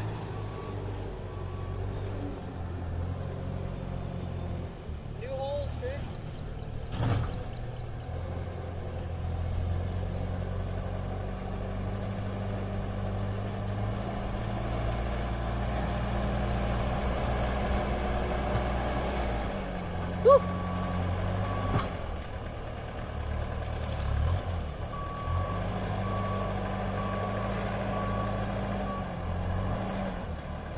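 Skid-steer loader's engine running under load, its pitch shifting as it works, with a reversing alarm beeping in several stretches as it backs up. A sharp clank comes about twenty seconds in.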